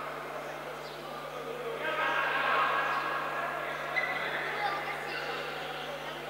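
Indistinct voices of futsal players and spectators in an indoor sports hall, over a steady low hum; the voices grow louder about two seconds in.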